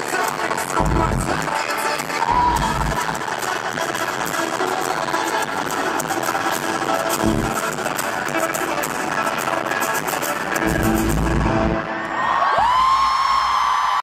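Live band music in a large arena, acoustic guitar and drums with a singer, and a cheering crowd. Heavy low drum hits land a few times, and near the end a high sliding tone comes in over the music.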